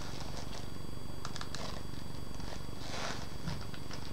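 Spinning prize-wheel sound effect: a steady, rapid low rattle of clicks as the category wheel turns.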